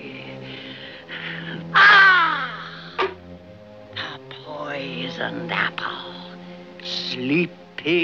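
A raven squawking several times over dramatic orchestral music with held notes. The loudest squawk, about two seconds in, is long and falls in pitch.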